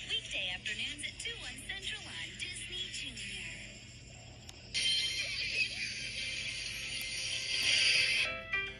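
Children's TV channel promo playing from a television set: music with voices, then a louder, fuller jingle that comes in suddenly a little past halfway.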